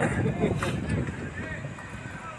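Football players' distant shouts and calls across the pitch, with a low wind rumble on the microphone.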